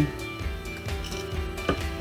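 Quiet background music, with a single light click near the end.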